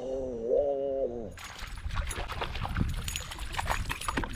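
A drawn-out excited cry in the first second, then splashing and thrashing water with many sharp clicks as a hooked bass fights at the surface beside the kayak.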